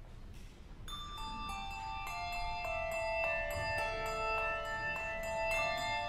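A handbell choir begins to play about a second in: struck brass bells ring out one after another in a high register, each note sustaining and overlapping the next.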